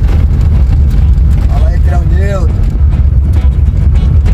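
A voice heard briefly over a loud, steady low rumble.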